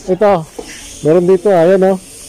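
A loud voice calling out twice: a short call, then a longer drawn-out one on a held pitch.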